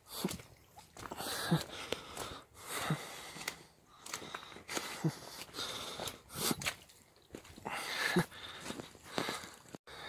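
A person breathing hard while climbing a steep hill on foot, with about one heavy, slightly voiced breath every second and a half.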